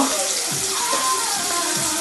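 Water running steadily from a bathroom tap.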